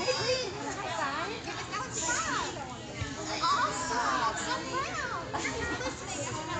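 Several young children's voices overlapping: high-pitched calls, squeals and chatter of small children at play.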